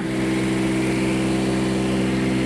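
A motorhome's diesel engine running steadily at a constant speed: an even, unchanging hum with a fixed low pitch.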